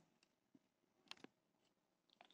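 Near silence: room tone, with two faint short clicks a little past the middle.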